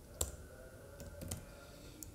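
Faint computer keyboard keystrokes as a short command is typed: one sharper click just after the start, then a few light taps about a second in.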